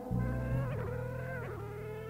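A harmonium holds a steady, reedy, buzzy chord over a low drone in the pause between sung lines of a devotional qasida.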